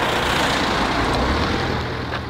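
A van driving past, its engine and tyre noise swelling and then fading away.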